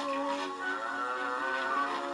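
Music from an early-1920s popular song recording: a melody of held notes over accompaniment, with a slide in pitch near the start.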